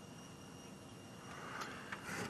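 Faint, steady outdoor background noise with a thin, high, steady whine over it, slowly getting louder, and a small click about one and a half seconds in.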